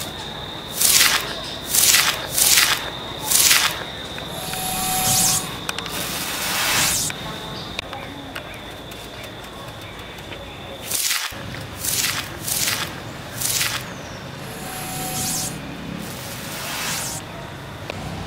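Short hissing bursts come in groups of four in quick succession, once near the start and again the same way about ten seconds later, with longer swells of hiss between them. Under them runs a steady high whine that stops about eleven seconds in.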